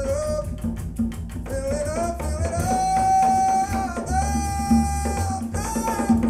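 Recorded jazz vocal music played back over Ascendo System Zf3 floor-standing loudspeakers with a subwoofer, heard in the room. A sung line ends at the start, then long held melody notes ring over steady drums, hand percussion and bass.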